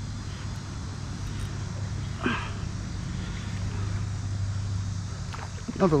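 Fishing reel being cranked steadily, a low whir, as a small chain pickerel is reeled in toward the kayak.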